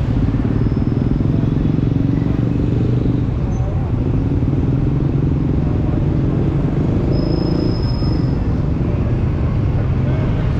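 Steady low rumble of a motorcycle's running engine mixed with the surrounding traffic of a busy intersection, with vehicles idling and passing close by.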